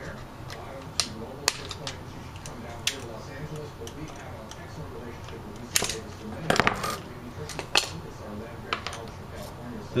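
Sharp metallic clicks and clinks of needle-nose pliers working the wire parts off a wooden spring mouse trap. They come scattered, with a quick flurry of clicks past the middle.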